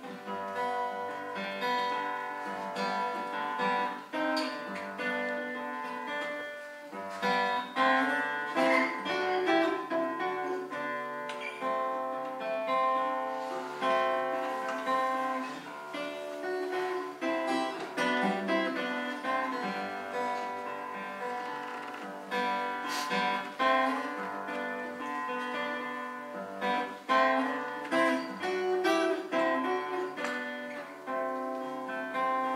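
Solo acoustic guitar fingerpicked, playing a Hawaiian slack key piece, with plucked melody notes ringing over one another throughout.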